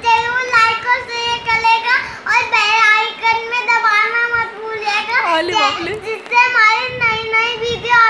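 A young boy's voice, talking in a high sing-song on a nearly steady pitch, with a brief dip and glide in pitch a little past the middle.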